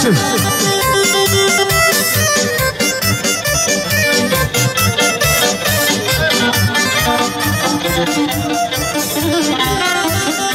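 Live Bosnian izvorna folk band playing a kolo dance tune through loudspeakers, with a fast steady beat and sustained melody.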